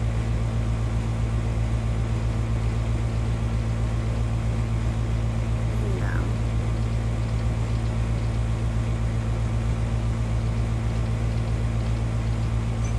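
Steady low room hum, like a fan or air conditioner running, unchanging in level, with a faint brief rising sound about six seconds in.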